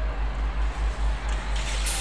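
Low, pulsing rumble of the mechanical hare running round the track in a virtual greyhound race, just before the traps open, with a higher rush of noise coming in near the end.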